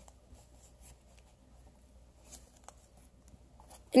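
Faint, sparse rustling and a few light ticks of paper packing being handled inside a styrofoam-lined shipping box.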